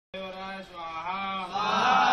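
Men chanting a Sanskrit havan mantra, reciting on one steady pitch and growing louder near the end.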